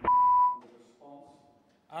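A steady electronic beep at one high pitch for about half a second, followed about a second in by a fainter, lower held tone.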